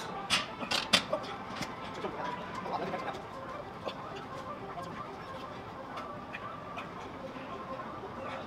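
Loaded barbell knocking against the steel hooks of a bench-press rack: a few sharp metal clanks in the first second, then scattered lighter knocks over a steady gym room hum.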